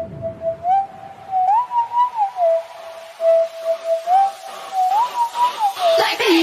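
A single pure, whistle-like tone playing a slow tune. It slides up at the start, then glides up and down between three notes, and repeats the phrase about four seconds in.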